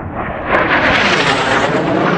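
An aircraft flying past, its engine noise swelling sharply about half a second in and staying loud, with a sweeping, phasing tone.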